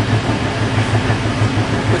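Steady low rumble of a moving passenger train, heard from inside an air-conditioned double-decker coach.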